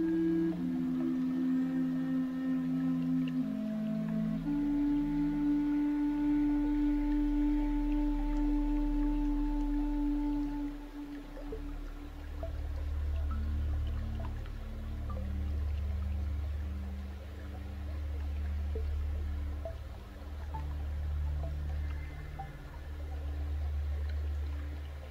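Slow ambient relaxation music: long held notes that shift every few seconds, giving way about eleven seconds in to a deep drone that swells and fades in slow waves.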